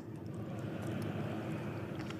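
Faint, steady background noise of a large hall with a seated audience, in a pause between sentences.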